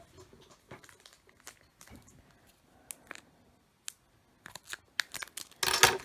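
Plastic foil wrapper of a Pokémon card booster pack crinkling as a stubborn pack is worked open: light scattered crinkles, then louder crinkling and a loud rip near the end.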